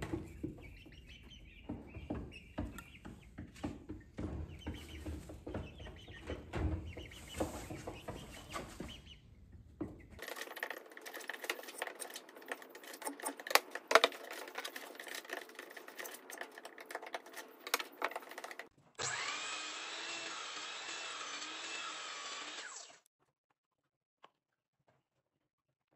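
Light handling sounds of a plastic stencil and pencil on a wooden board: scattered small taps, clicks and scrapes in several short takes, with a steadier, softly wavering sound for a few seconds near the end.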